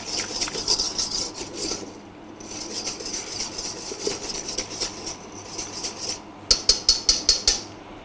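Wire balloon whisk beating a runny mix of egg yolks, sugar and lemon juice in a stainless steel bowl: brisk scraping, clinking strokes, several a second, as the wires hit the metal. There is a short lull about two seconds in, and a run of louder, faster strokes near the end.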